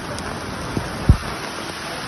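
Heavy rain falling steadily, a dense even hiss, with a sharp low thump about a second in.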